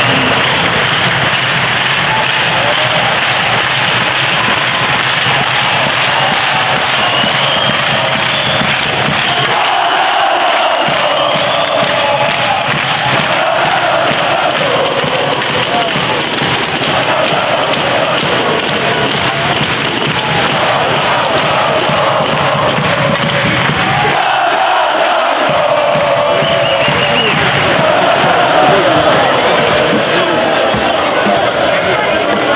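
Ice hockey arena crowd cheering and chanting, with music playing over it.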